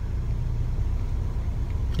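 Steady low rumble inside a car's cabin with the engine running.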